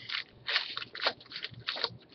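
Baseball cards being handled and flipped through, making a few short papery rustles and crackles.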